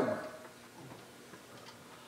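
Faint light ticks in a quiet room, after a man's voice trails off.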